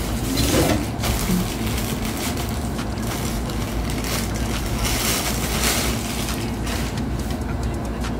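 Plastic packaging crinkling and rustling as a clothing item is unwrapped, with louder crackles now and then over a steady low hum.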